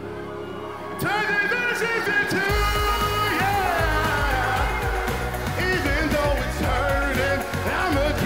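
Live pop band with a male singer. After a quieter held passage, the full band comes in loudly about a second in, and a heavy bass joins a second and a half later.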